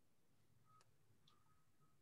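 Near silence: room tone over a video-call connection, with two faint short tones near the middle.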